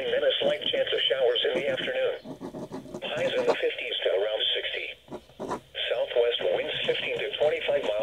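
A radio weather forecast: a voice reading the forecast, thin and narrow as through a small radio speaker, with two short pauses.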